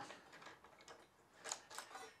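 Faint small metallic clicks and ticks from the All American Sharpener's blade clamp being worked by hand as its threaded clamp screw is backed out. Two slightly louder clicks come about one and a half seconds in.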